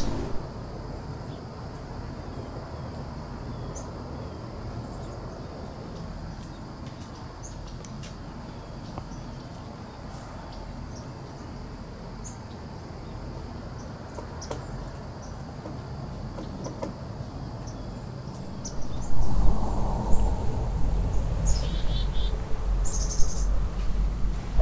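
Outdoor nature ambience: a steady high insect drone with scattered faint bird chirps. About 19 seconds in, a louder low rumble sets in, with a few short chirps over it.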